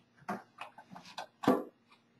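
Light, irregular clicks and taps from a small metal acetone can being picked up and its screw cap taken off.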